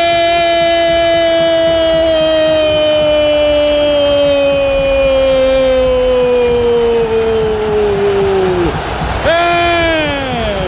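Brazilian radio football commentator's drawn-out goal cry, a single 'gooool' held for about nine seconds, loud, its pitch sinking slowly until it breaks off. A second, shorter shout starts near the end.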